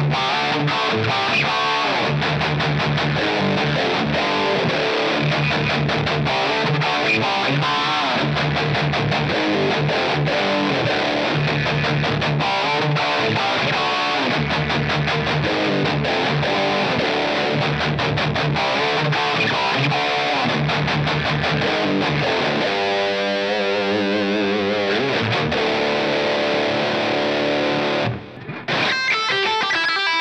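Electric guitar played through a Fender GTX100 amp: a picked riff that keeps coming back to a low note. About 23 seconds in, a held note wavers with vibrato. The sound drops out briefly near the end before a new passage starts.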